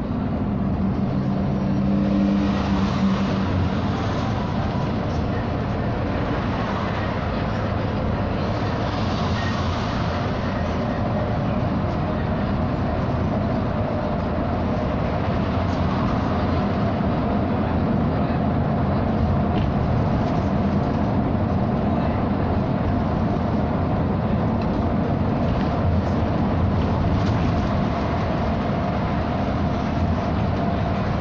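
Cabin noise inside a SOR NB 18 articulated city bus driving at speed: a steady drone of engine and tyres on the road, with a low engine hum standing out in the first few seconds.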